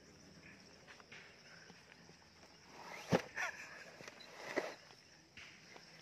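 Footsteps through grass, over a steady high insect drone, with two louder brief sounds about three and four and a half seconds in.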